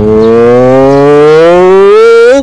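One long, drawn-out call on a single held note that rises slowly in pitch, loud and unbroken for about two and a half seconds.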